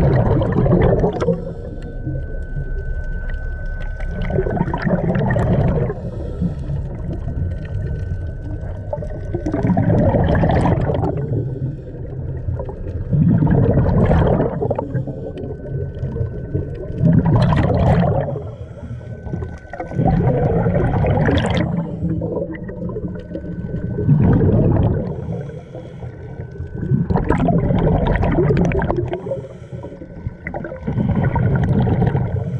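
Scuba diver breathing underwater through a regulator: a bubbling exhale burst about every three to four seconds, with a faint steady whistle in the gaps between the bursts.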